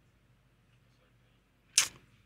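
Near silence, broken near the end by one short, sharp hiss close to the studio microphone.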